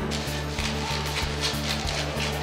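A sheet of newspaper crinkling and rustling as it is handled and cut into strips with scissors, in a series of short rustles, over steady background music.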